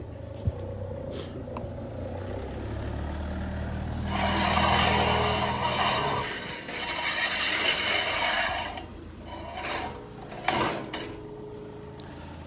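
A heavy vehicle's engine running close by with a low drone, then a louder rushing noise for about four to five seconds as it goes past, fading away near the end.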